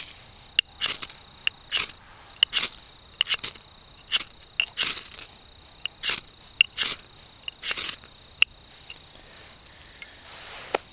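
A knife spine scraping a ferro rod over and over, over a dozen quick rasping strikes with a few sharp clicks, throwing sparks into fatwood shavings and grass tinder until it catches. Crickets chirp steadily behind.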